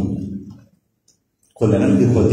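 A man's voice in a chanted Arabic Quranic recitation, with long held notes, ends a phrase, pauses for about a second, then starts the next phrase.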